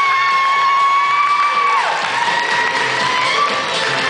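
Music with a long high held note that slides up, holds for a couple of seconds and slides away, then a second, slightly lower held note, over a busy accompaniment.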